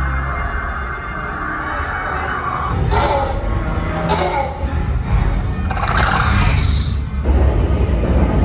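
Ominous, dramatic ride soundtrack music over a deep, continuous rumble. Short, loud bursts of hissing noise break in about three, four and six seconds in.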